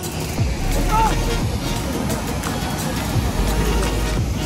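Steady rushing noise of water pouring over a dam's rocky spillway, with a faint voice about a second in and background music underneath.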